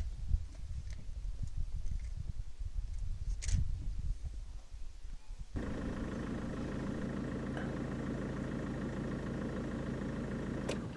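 Low, uneven rumbling with a couple of sharp clicks, then, from about halfway through, a vehicle engine idling steadily close by.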